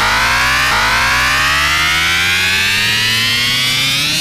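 Electronic-music build-up in a frenchcore mix: a layered synth tone climbing steadily in pitch like a siren, with the kick drum dropped out and a low bass tone holding underneath.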